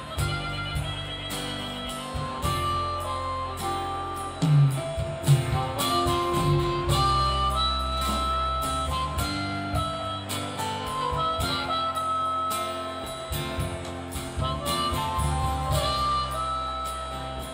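A live rock band playing, with a harmonica carrying the lead melody over acoustic guitar and keyboard.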